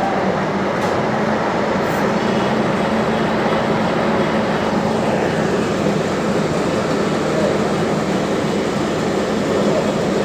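Engine of a road-work machine running steadily, a constant low hum under a broad mechanical rumble that does not change in pitch or loudness.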